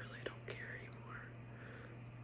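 A woman whispering a few soft words in the first second or so, then pausing, over a faint steady low hum.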